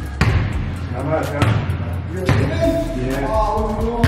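Sharp thuds echoing in a gym hall, about one a second, under voices.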